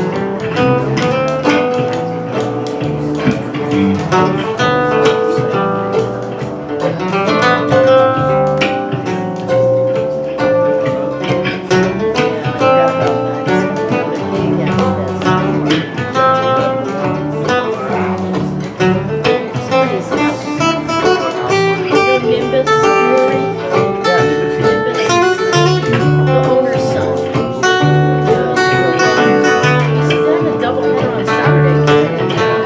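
Live acoustic string trio of mandolin, acoustic guitar and plucked upright bass playing a continuous instrumental passage, with busy picked notes over a walking bass line.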